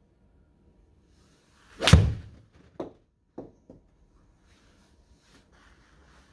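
An iron swing: a short whoosh leads into a sharp, loud strike as the 7-iron hits the golf ball off a hitting mat, about two seconds in. A few much fainter knocks follow within the next two seconds.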